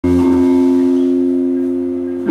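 A live band holding a sustained two-note chord, steady and slowly easing, with no drums or strumming under it.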